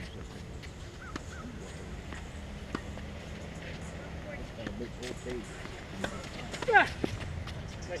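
Tennis rally on a hard court: rackets striking the ball and the ball bouncing, heard as irregular sharp knocks, over distant voices. The loudest moment, about seven seconds in, is a sharp hit together with a short cry.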